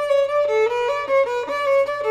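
Solo violin playing a quick repeating figure of short bowed notes.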